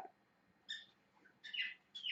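Caged pet parrots giving a few short, faint chirps, one about a second in and more near the end.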